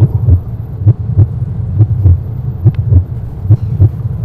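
A heartbeat sound effect over a steady low hum: low paired lub-dub thumps, a little faster than one beat a second.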